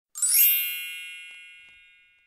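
A bright, sparkly chime sound effect for a logo intro: a quick upward shimmer of ringing notes, then a cluster of high ringing tones that fades away over about two seconds.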